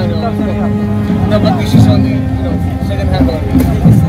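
People's voices over sustained low tones that shift in pitch now and then.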